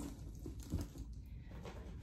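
Faint rustling and a few soft knocks as items are handled inside a coated-canvas bucket bag and pulled out of it, over a low room hum.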